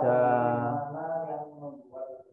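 A man's voice holding one long drawn-out vowel, a hesitation sound in mid-sentence, for about a second and a half, sinking slightly in pitch and fading out. A brief spoken syllable comes near the end.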